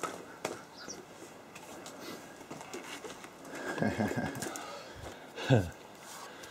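Scattered clicks, knocks and scrapes of a man climbing through a square opening in a stone tower floor strewn with rubble and planks. A man's voice gives short falling calls or grunts about four seconds in and, loudest, about five and a half seconds in.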